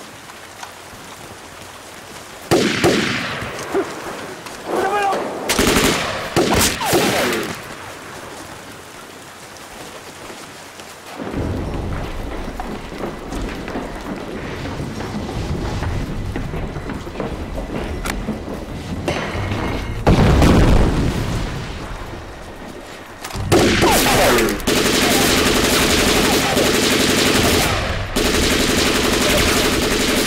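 Movie battle soundtrack in the rain: loud shouted bursts in the first few seconds, then a steady low rumble. About three-quarters of the way in, continuous heavy gunfire with machine guns breaks out and keeps going.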